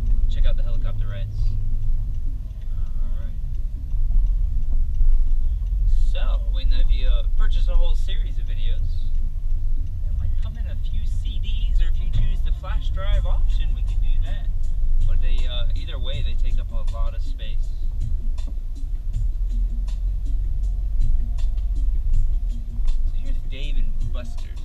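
Car cabin rumble from the engine and tyres while driving, heard from inside the car. A voice comes and goes over it, chiefly in the middle of the stretch.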